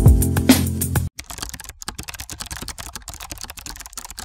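Intro music with a bass line and drum hits, cut off abruptly about a second in. It is followed by rapid, irregular computer-keyboard typing clicks: a typing sound effect laid under text being typed out on screen.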